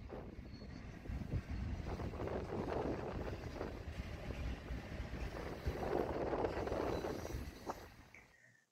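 Double-stack container freight train rolling past: a steady rumble of wheels on rail, louder from about a second in and fading out near the end.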